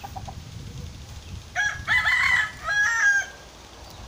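A rooster crowing: one multi-part crow starting about a second and a half in, with a short break before its last part. A few faint short clucks come just after the start.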